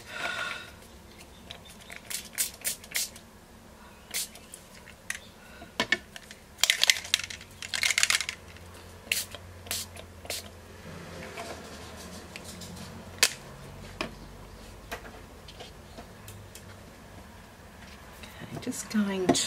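Finger-pump spray bottles of Distress Oxide ink misting onto card: a run of short hissing spritzes and sharp clicks from the sprayers in the first half, then quieter handling.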